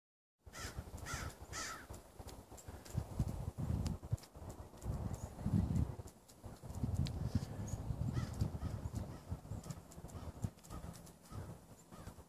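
Low, uneven rumbling and buffeting of wind and handling on a phone microphone, with pine branches brushing past it. Three short pitched calls come in the first two seconds.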